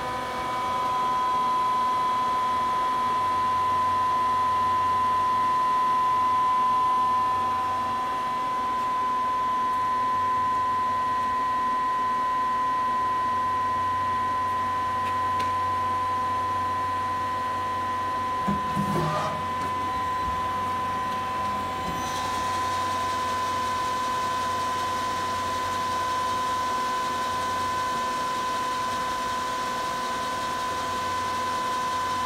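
Star SV-32 Swiss-type CNC lathe running, a steady machine whine over a low hum, with one brief clunk a little past halfway.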